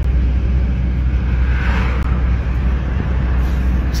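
Inside a moving car's cabin: steady engine and road noise with a strong deep rumble.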